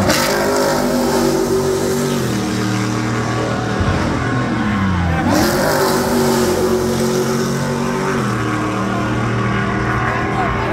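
Vehicle engines running on a race circuit. About three to five seconds in, one slows, its pitch falling, then revs up again.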